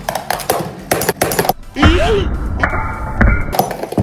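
Rapid hard plastic clacks as a Beyblade Burst top in speed mode strikes the stadium wall and the opposing top, dense for about a second and a half. These are followed by a short wavering tone and a steady buzzy sound that ends abruptly.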